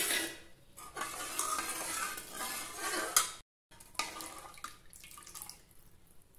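A steel ladle stirring thin tamarind rasam in an aluminium kadai: liquid swishing and splashing, with the ladle scraping and clinking against the pan. The sound drops out completely for a moment a little past halfway, then goes on more quietly.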